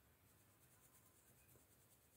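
Very faint scratching of a coloured pencil on paper as a colour-chart swatch is shaded in, barely above near silence.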